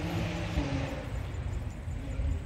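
Steady low background rumble with a faint hum, like distant traffic.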